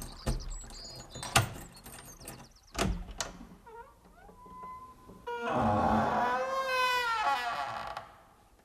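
A few sharp wooden knocks and thuds, then, a little past halfway, a long loud creak of a wooden door lasting about two and a half seconds.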